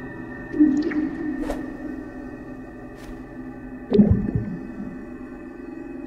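Animation soundtrack: held music tones throughout, with two short, louder sound effects, one about half a second in and a louder one about four seconds in.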